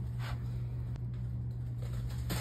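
Paper towel rustling and squishing as hands press a block of tofu wrapped in it, with a couple of soft rustles over a steady low hum.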